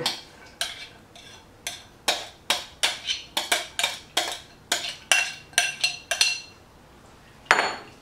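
Metal tongs clinking and scraping against a glass bowl as diced celery and apple are pushed out into the salad, about twenty irregular ringing clinks over six seconds. A single louder knock near the end as the glass bowl is set down on the stone counter.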